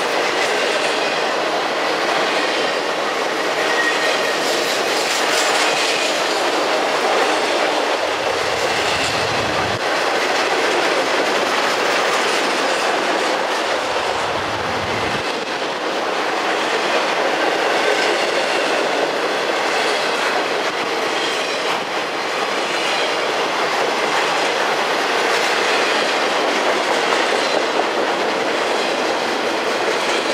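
Intermodal freight train of trailer-laden flatcars rolling past close by: a loud, steady rush of steel wheels on rail, with faint high-pitched wheel squeal now and then.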